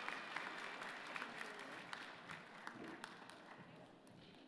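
Audience applauding in a large hall, with many scattered claps that slowly fade.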